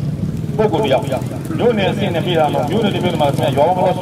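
A man's voice speaking through a handheld microphone and horn loudspeakers, sounding thin and cut off at the top, starting after a short pause. A steady low hum runs underneath.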